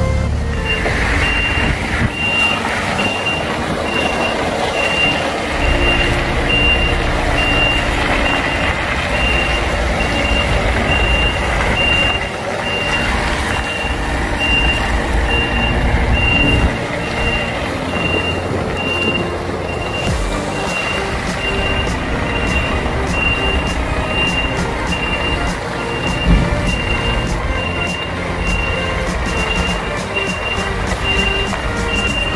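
A vehicle's reversing alarm beeping at an even pace, starting just under a second in, over a heavy diesel truck engine running.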